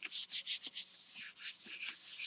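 Bare hands rubbing over a sheet of cardstock laid on a Gelli plate, burnishing it down to lift the paint print: a quick run of dry, papery swishes, a brief pause about a second in, then more strokes.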